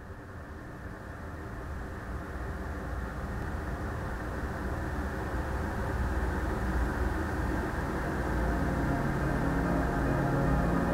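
Atmospheric intro of a progressive metal track: a muffled, rumbling noise swelling slowly louder, with low sustained tones coming in near the end.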